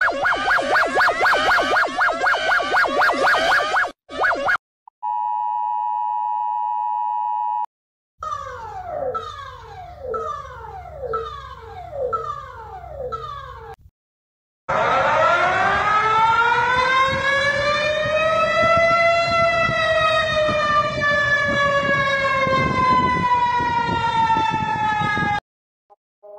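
A sequence of emergency alert alarm sounds. First a fast warbling alarm for about four seconds, then a steady electronic tone for a few seconds, then a string of falling sweeps at about one a second. It ends with a long siren wail that rises for several seconds and then slowly falls before cutting off.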